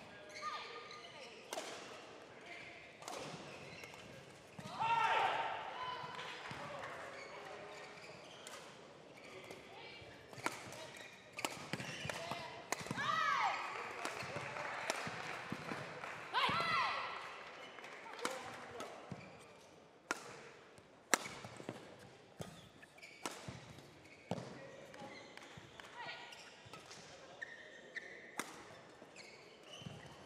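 Badminton singles rally: sharp, irregular racket strikes on the shuttlecock, with shoes squeaking on the court mat a few times as the players lunge and change direction. Faint voices carry in the background.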